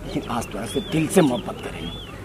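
Quiet speech, lower than the surrounding dialogue, with two faint high chirps that rise and fall, about a second in and near the end.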